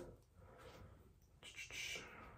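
Near silence: room tone, with a faint short hiss about one and a half seconds in.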